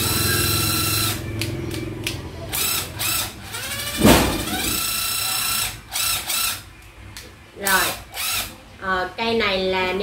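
Panasonic EZ6507 cordless drill driver's motor run in short trigger pulls. A steady whine opens, then comes a series of brief bursts, a loud click about four seconds in, a rising whine as the motor spins up again, and more short bursts.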